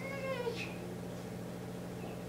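An infant's short, high-pitched whiny vocalization lasting about half a second at the start, over a steady low hum.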